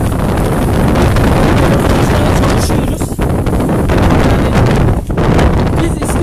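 Wind blowing across the phone's microphone: loud, steady rumbling noise that dips briefly about three and five seconds in.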